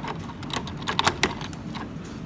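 Plastic parts of a Transformers Voyager Optimus Prime toy clicking as they are handled while the top of the cab is unpegged: a few sharp, separate clicks, most of them around the middle.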